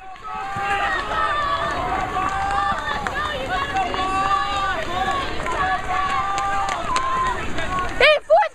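Spectators shouting and cheering on passing cross-country runners, many voices overlapping with long drawn-out calls, over a low steady rumble.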